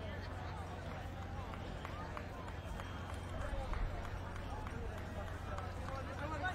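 Indistinct chatter of spectators, with no one voice clear, over a steady low hum.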